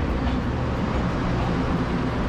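Taiwan Railway DR1000 diesel multiple unit moving past a station platform: a steady low engine hum under the noise of the wheels on the rails.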